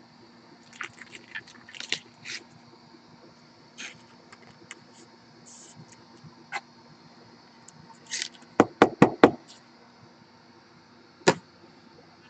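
Trading cards being handled: light scattered rustles and ticks, then four quick sharp taps a little after the middle and a single sharp click near the end.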